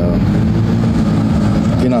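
A steady, low engine drone, like a heavy motor idling, runs without a break. A man's voice picks up again near the end.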